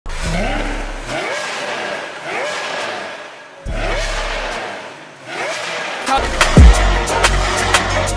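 Lamborghini Aventador SV's V12 blipped repeatedly through the stock exhaust, each rev a quick rise in pitch. About six seconds in it switches to the same engine through a Fi Exhaust valvetronic catback with catless downpipes: much louder revs with sharp crackling pops on the overrun.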